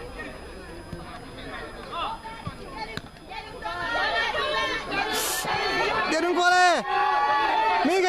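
Players and spectators shouting and calling across an outdoor football pitch during play. The voices are sparse at first, build into overlapping calls from about halfway, and peak in one loud, long, high-pitched shout shortly before the end.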